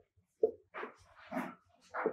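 A woman's voice murmuring a few quiet, short syllables, about four in two seconds, well below her normal speaking level.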